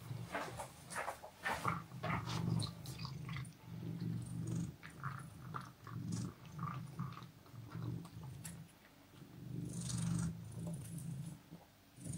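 A cat crunching dry kibble from a stoneware bowl, many small crisp clicks, while purring in patches that stop and start.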